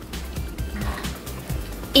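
Quiet background music, with faint soft knocks as a small plastic toy furniture piece is picked up.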